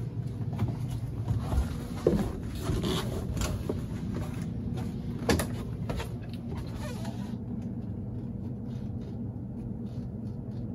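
A steady low mechanical hum of machinery aboard a motor yacht, under scattered knocks and handling noises from a handheld camera being carried through a cabin doorway. There is a sharp click about five seconds in.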